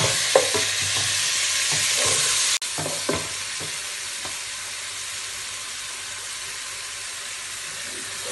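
Chopped onion and tomato paste sizzling in hot oil in a pan, with a wooden spatula stirring and scraping the pan in short strokes during the first three seconds. Just under three seconds in, the sizzle drops abruptly to a quieter, steady hiss.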